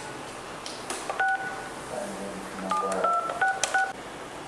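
Push-button desk telephone being dialed: about five key presses, each a short two-tone keypad beep with a light click, the last few in quick succession.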